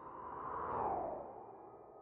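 Whoosh transition sound effect: a swelling swish that peaks just under a second in and falls in pitch as it fades.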